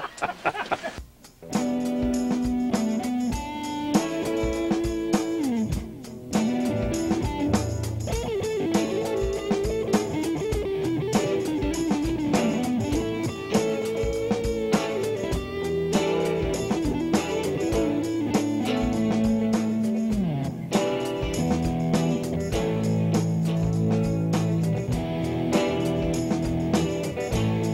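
Guitar-led background music with a steady beat, starting about a second and a half in, with some sliding notes.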